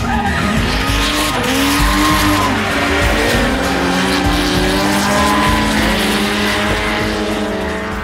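Drift cars' engines revving up and down on and off the throttle, several at once, with tyres squealing and skidding as they slide. The sound fades near the end.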